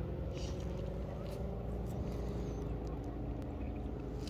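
Steady low hum of a distant engine, its pitch drifting slightly upward, with scattered faint high clicks.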